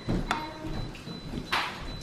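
Metal spoon scraping and knocking against a glass dish as it scoops a soft dessert: two short clicks a little over a second apart.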